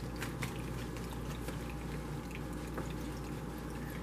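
Tarot cards being handled: a few faint soft clicks as a card is drawn from the deck and laid onto the spread, over a steady low room hum.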